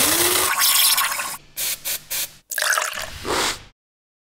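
Liquid sound effects for the closing logo animation: a run of splashing, pouring bursts that cut off abruptly just before the end.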